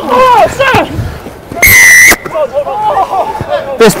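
Rugby referee's whistle blown once, a single shrill blast of about half a second, among players' shouts. It marks a penalty for tackling a player without the ball.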